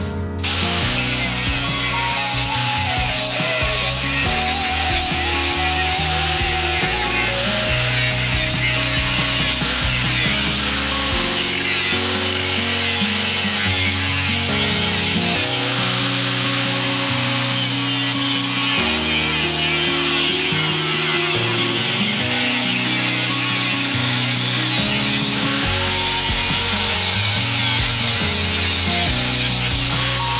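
A power tool working the steel of a marble-cutting disc, a steady grinding noise, to shape a knife blank; background music with sustained chords plays throughout.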